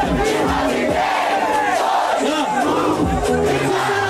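Large crowd of spectators yelling and cheering together, many voices at once, loud and sustained.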